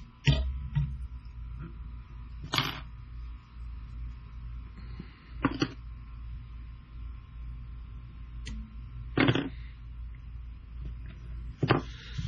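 Handling sounds of whip-finishing and trimming thread on a jig at a fly-tying vise: five short, sharp sounds two to three seconds apart over a low steady hum.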